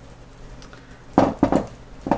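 Small metal jewellery pliers clinking against a wire jump ring and crystals: two sharp clinks a little over a second in.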